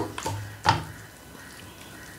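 Wooden spatula stirring chicken pieces in a stainless steel wok. There is one sharp scrape a little under a second in, then only a faint steady hiss.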